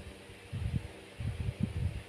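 A pause in the talk: room tone with faint, soft, irregular low thuds and rustles, beginning about half a second in, as hands rub and shift together.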